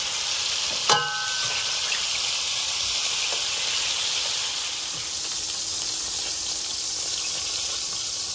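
Hot fat and beef drippings sizzling steadily in a stainless steel pot just after searing short ribs. About a second in comes a single sharp, ringing clink of metal tongs against the pot.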